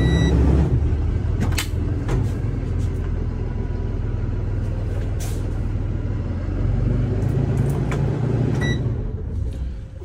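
Cummins B6.7 diesel engine of a 2024 Thomas C2 school bus idling with a steady low rumble, heard from the driver's seat. A high warning beep stops just after the start, a few switch clicks sound, the engine is louder for a couple of seconds near the end and then dies away.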